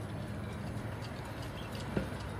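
An engine idling steadily with a low hum, with faint irregular ticks over it and a single sharp knock right at the end.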